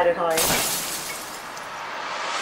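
Glass shattering sound effect: a sudden crash about half a second in, trailing off slowly over the next two seconds.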